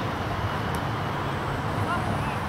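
Open-air ambience at a football training ground: a steady low rumble of wind or distant traffic, with faint distant shouts of players.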